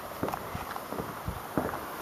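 A person's footsteps: a few soft thuds while walking from a wooden deck onto paving and grass.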